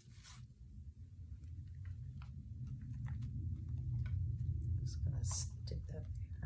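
A hand rubbing and pressing a sheet of paper down onto a printing plate, a low rubbing rumble that builds over the first few seconds, with small taps and a short papery rustle near the end.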